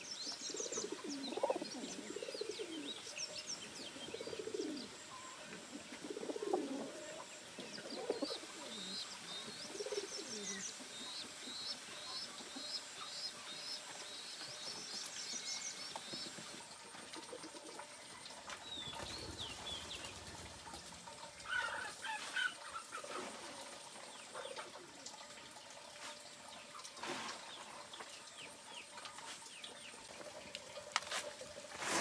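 Domestic pigeons cooing in low, wavering calls through the first ten seconds or so, with a small bird chirping in quick runs of high notes in the background; later come scattered squeaky chirps and fluttering wings.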